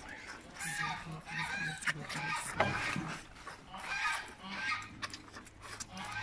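Moose calves giving a run of short, repeated nasal calls while crowding at the fence to be fed, with faint human voices in the background.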